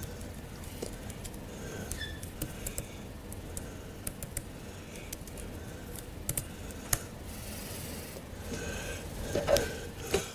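Computer keyboard keys clicking in irregular keystrokes as a terminal command is typed, over a steady low room hum.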